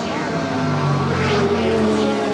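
Racing engines of a Porsche and a Mazda sports sedan at speed: a droning engine note that climbs slightly in pitch and grows a little louder toward the end.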